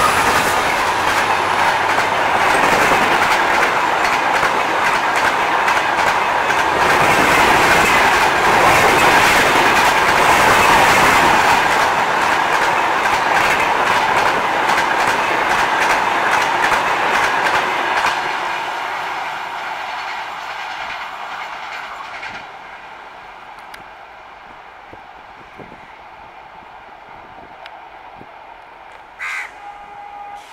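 The LHB coaches of a passing express train rolling by at speed, its wheels clattering rhythmically over the rail joints. The sound is loud for about eighteen seconds, then fades away quickly as the last coach goes past.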